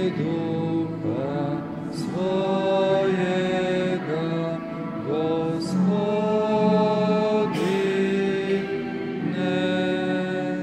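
Slow church hymn sung with instrumental accompaniment, the melody moving in long held notes that scoop up at their start.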